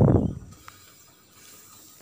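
Pot of pongal boiling over under a steel plate lid: a short breathy hiss at the start that fades within half a second, then a faint steady hiss of frothing.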